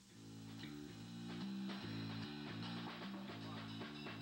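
A small band's studio recording begins: the music comes in at the start and rises in level over the first second, then carries on with a run of changing pitched notes and chords.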